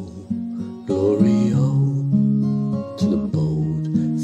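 Music: an acoustic guitar playing the accompaniment to an Irish folk ballad, with held notes and chord changes every half second or so.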